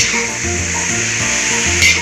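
Pork chunks sizzling as they fry in a large wok, stirred with a metal ladle, with one sharp click near the end. Background music with a steady bass beat plays over it.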